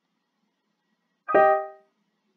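Notation software playing back a single piano note, the G above middle C, as it is entered in the alto voice of a C minor chord. It starts sharply past the middle and fades away within half a second.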